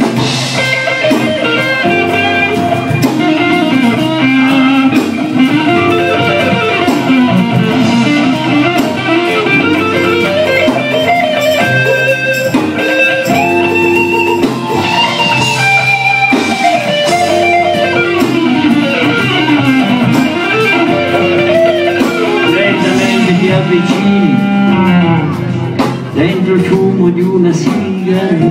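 Live blues band in an instrumental passage, electric guitar to the fore with bending, gliding notes over bass and drums.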